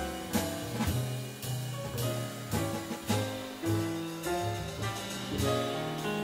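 Jazz piano trio playing: upright bass walking low notes under drums played with sticks, with regular cymbal strikes, and piano notes above.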